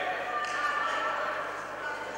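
Spectators' voices filling a large, echoing sports hall, with many people talking and calling out at once.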